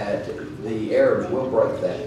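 A man preaching over the church sound system in short, emphatic vocal bursts that the transcript does not render as words.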